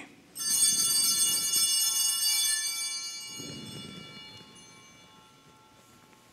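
Altar bells rung once at the elevation of the consecrated chalice, a bright cluster of high ringing tones that fades away over about four seconds.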